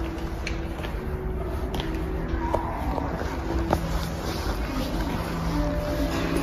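Indoor showroom ambience: a steady low rumble of room noise with faint held tones and a few light clicks.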